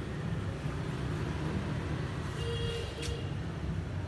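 Steady low rumble of distant traffic, with a brief faint higher tone about two and a half seconds in.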